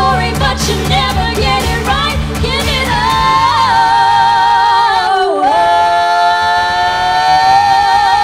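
Two female voices singing a pop duet over a backing track with a steady beat. About three seconds in, the beat drops away and both singers hold a long belted note together with vibrato, dipping briefly about five seconds in before holding again.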